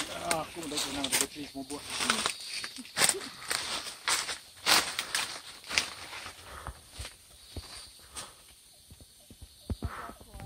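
Someone pushing on foot through dense forest undergrowth: leaves and fronds brushing and rustling, with sharp crackles and footsteps. It comes in a run of short swishes and snaps that thins out over the last second or two.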